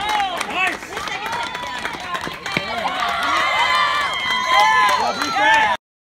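Many children's voices shouting and cheering over one another, with scattered claps. The sound cuts off suddenly near the end.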